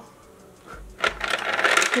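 Small plastic lipstick and lip-gloss tubes clattering against each other and the clear plastic drawer organiser as a hand rummages through them: a dense run of small clicks and rattles in the second half.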